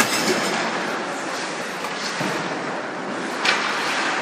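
Ice hockey play in an arena: a steady noisy wash of skates on the ice and rink noise, with a sharp crack right at the start and another about three and a half seconds in.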